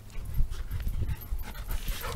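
Golden retrievers panting as they run up close, with irregular low thuds underneath.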